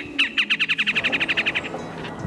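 Recorded bird call played back through a small handheld speaker to attract birds: one high chirp, then a rapid, even trill of high notes that lasts about a second and a half.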